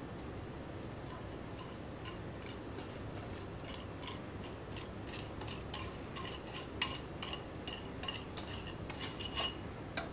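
Metal wire whisk clinking and scraping against a glass bowl as a thick melted butter and brown sugar mixture is scraped out. Light clinks, few at first and coming quickly from about four seconds in.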